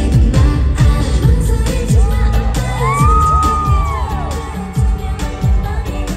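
A live K-pop song played loud through an arena sound system and recorded from the audience: female group vocals over a heavy kick-drum beat of about two strokes a second. A held high note rises and falls a little past the middle.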